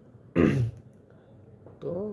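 A man clears his throat once, briefly, about a third of a second in.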